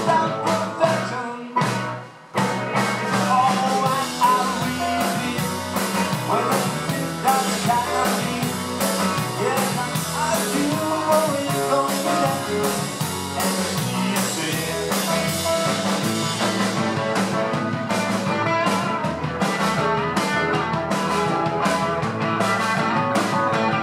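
Live rock and roll band playing electric guitars, drums and electric keyboard. The music drops out briefly about two seconds in, then the band comes back in.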